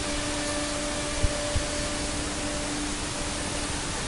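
Conquest 515 CNC router running, a steady rushing noise with a steady hum that fades out about two and a half seconds in, as the head moves over to begin cutting out parts. One small tap just over a second in.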